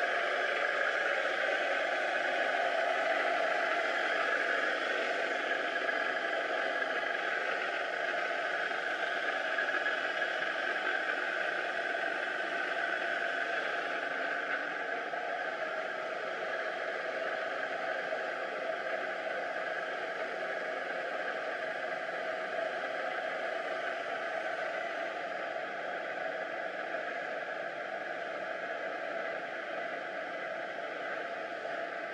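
Automatic laminating machine with a digital inkjet printing unit running under test, a steady hiss-like machine noise with no clear rhythm.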